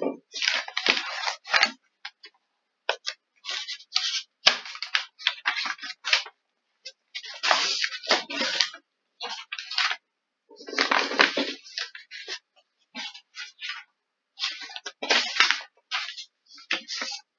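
Irregular bursts of rustling and crackling close to the microphone, broken by short, sudden silences.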